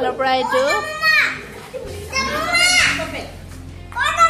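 Young children's voices calling out in long, high-pitched cries that swoop up and down, with a steady low hum coming in about two seconds in.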